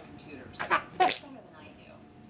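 A person sneezing: two quick, loud, breathy bursts about half a second apart, the second the louder.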